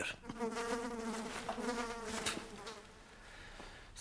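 A steady, pitched buzz that holds for about two seconds and then fades out.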